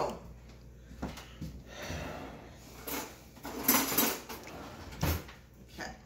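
Scattered kitchen clatter: dishes and utensils being handled, with a louder rattling burst about midway and a knock near the end.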